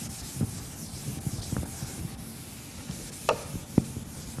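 Chalk rubbing and scraping on a blackboard in short, irregular strokes, with two brief sharp ticks or taps a little before the end.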